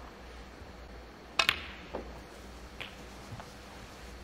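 Snooker balls striking: one sharp, ringing click of ball on ball about a second and a half in, then a few fainter knocks as the balls run on, over a hushed arena. This is the black being potted.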